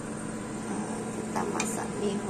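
Steady low hum of a running machine, with a few brief clicks about three quarters of the way through.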